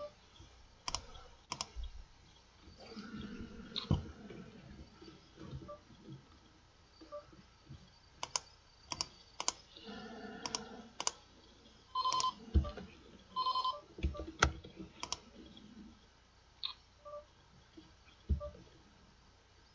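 Computer mouse clicks and poker-client sound effects: a scatter of sharp separate clicks, and two short electronic beeps about a second and a half apart a little past the middle.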